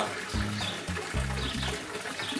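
Background music, carried mainly by a low bass line of short notes that change every fraction of a second.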